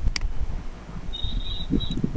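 A single sharp mouse click just after the start over a low room rumble, then a thin high-pitched tone, broken once, in the second half.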